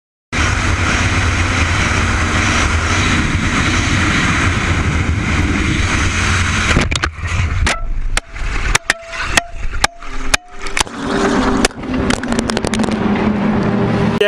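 Wind rush and motorcycle noise at highway speed from a camera on the bike, then, from about seven seconds in, a motorcycle crash: a string of sharp knocks and scrapes as the camera tumbles across the road, followed by a low steady hum near the end.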